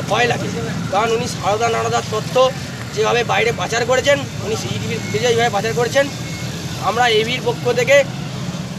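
A man speaking heatedly in Bengali, over a steady low hum of vehicle engines.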